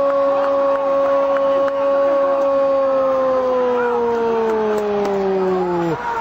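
A Brazilian football commentator's drawn-out goal shout, "gol" held as one long steady note that sags in pitch over the last few seconds and breaks off near the end.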